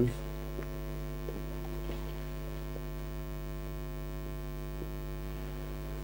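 Steady electrical mains hum, with a few faint, brief ticks over it.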